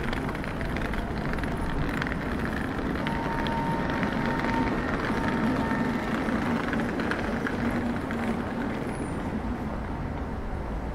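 City street traffic running steadily, with a low engine hum that swells in the middle and then eases. A faint thin tone sounds for a couple of seconds about three seconds in.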